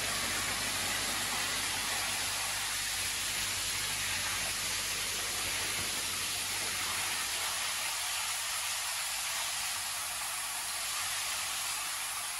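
Steady hiss of water in a koi holding tank, with a low steady hum underneath.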